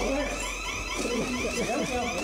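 An electronic alarm sounding in high, rapidly repeating rise-and-fall chirps, about four a second, with people's voices underneath.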